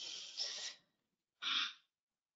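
A woman's audible breathing: a soft, breathy exhale that fades out, then a short breath about a second and a half in.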